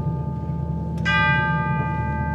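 Concert band holding a low sustained chord. About a second in, a tubular bell (orchestral chime) is struck and rings on over it.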